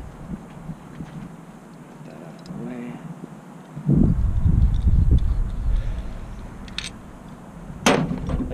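A RIDGID flaring tool being loosened and taken off stainless steel tubing: small scattered metal clicks, then a sharp metallic clank near the end as the tool is set down on the bench. A low rumble runs for a couple of seconds midway.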